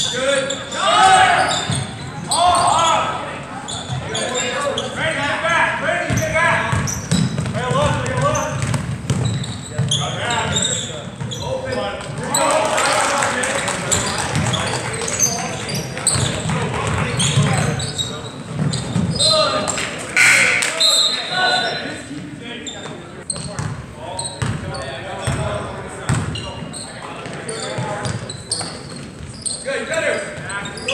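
A basketball being dribbled on a hardwood gym floor during a game, under the voices of players and spectators, echoing in a large gym; the voices swell into a denser crowd noise around the middle.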